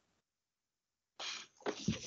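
Dead silence for just over a second, then a short, soft breath in and a small mouth noise over a video-call microphone, just before the next speaker starts to talk.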